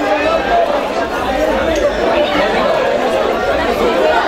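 Crowd chatter: many guests talking at once, a steady mass of overlapping voices with no one voice standing out.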